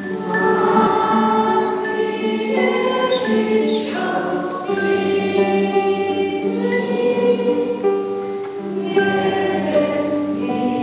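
Children's choir singing a slow song in long held notes.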